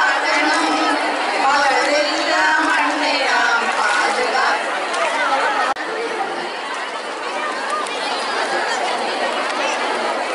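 A large crowd of women's voices chattering and calling out all at once. A little over halfway in the sound changes abruptly to a more even crowd hubbub.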